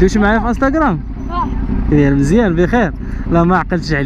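Voices talking close by, over the steady low rumble of an idling motorcycle engine.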